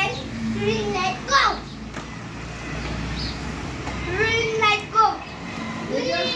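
Young children calling out in high voices, several short calls in a row with a steady low hum underneath.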